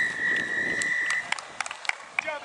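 A referee's whistle: one long, steady blast that stops a little over a second in, followed by a few short sharp clicks.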